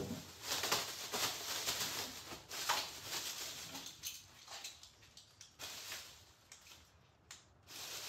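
Clear plastic wrapping crinkling and rustling in irregular bursts as gloved hands pull and unwrap it, with a short lull about seven seconds in.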